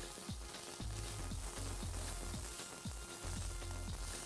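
Diced chicken, chorizo, ham and corn kernels sizzling steadily in oil in an electric skillet, stirred with a slotted spatula.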